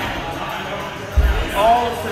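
A single deep thud a little over a second in, over background music with vocals.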